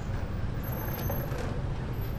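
Steady low rumble of outdoor background noise, like traffic on a nearby road, with a couple of faint knocks as plastic chairs are handled about a second in.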